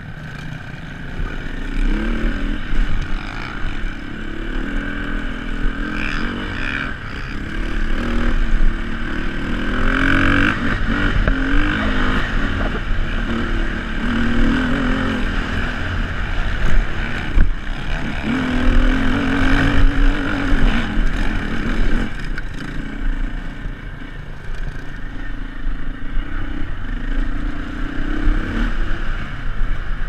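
2006 Beta RR450 four-stroke single-cylinder trail bike engine under way off-road, its pitch rising and falling again and again as the throttle opens and closes through the gears.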